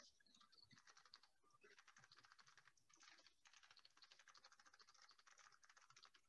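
Faint typing on a computer keyboard: runs of rapid key clicks broken by short pauses.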